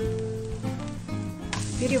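Background music plays throughout; about one and a half seconds in, the sizzle of a thin pancake frying in an oiled pan comes in.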